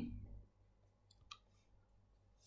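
Near silence, with a few faint, short clicks about a second in.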